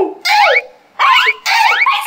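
A string of short high-pitched squeals, each sweeping upward in pitch, several in quick succession.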